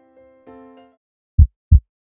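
Soft sustained music notes end about a second in, then a heartbeat sound effect: a pair of loud, deep thumps about a third of a second apart, lub-dub.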